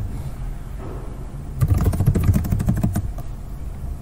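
Computer keyboard keys being typed, a quick run of clicks clustered about one and a half to three seconds in, over a steady low hum.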